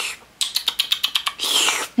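A woman's mouth noises as she mimes drinking from a cup: a quick run of about nine gulping clicks, about ten a second, then a short breathy exhale near the end.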